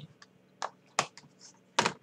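A few separate sharp clicks and knocks, the loudest near the end, from a small whiteboard and marker being handled and set down on a desk.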